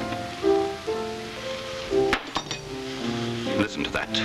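Slow music played on an instrument in the house, a melody of held notes over chords. Around the middle and near the end there are a few short clinks.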